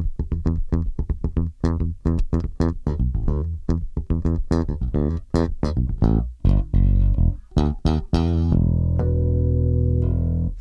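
Music Man Retro '70s StingRay electric bass played fingerstyle: a fast, percussive funk line of short plucked notes and ghost notes, finishing on one low note held for the last second and a half.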